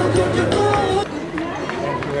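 Background music that ends about a second in, followed by people talking at an outdoor gathering.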